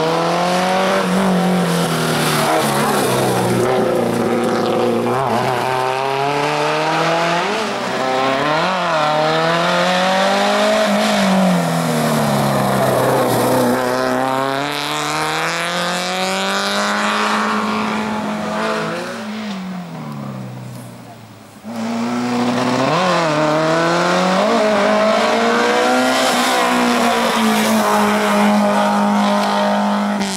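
Race car engine revving hard and dropping off again and again as it accelerates and brakes between slalom cones, its pitch swinging up and down every couple of seconds. The sound fades about twenty seconds in, then comes back abruptly at full strength.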